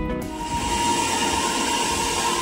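Loud nightclub music. Just after the start, an abrupt edit swaps a pitched track with heavy bass for a noisy, hissy club din with a held note running through it.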